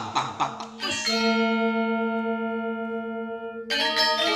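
A bell-like chime of transition music struck about a second in, ringing with many overtones and fading slowly, then struck again near the end.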